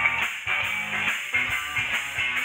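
Live rock band playing, electric guitars over bass guitar and drums, amplified through the stage speakers.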